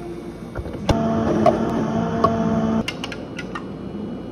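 Countertop blender motor running for about two seconds, blending a jar of milk; it starts and stops abruptly. A few light clicks and knocks follow as the jar and cups are handled.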